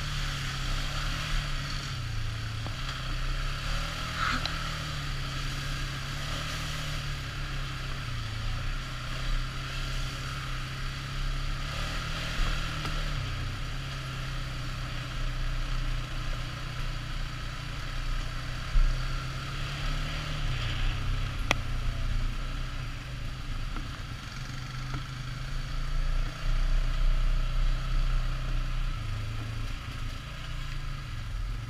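ATV engine running at trail-riding speed, its pitch rising and falling as the throttle is worked, with one sharp knock about two-thirds of the way through.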